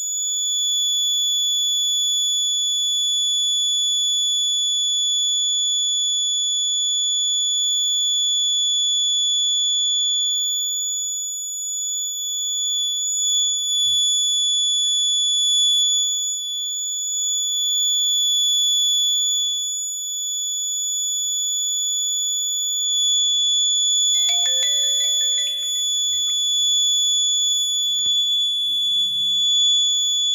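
Piezo buzzer on an Arduino accident-alert board sounding one steady, unbroken high-pitched tone: the alarm for a detected front accident.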